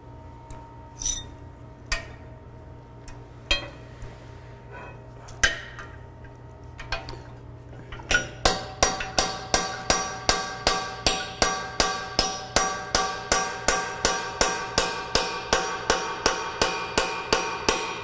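Hand hammer striking metal: a few scattered knocks, then from about eight seconds in a steady run of ringing blows, about two and a half a second. It is steel-on-steel hammering on a socket fitted to a stuck bolt of an old KUKA robot arm, to break it loose.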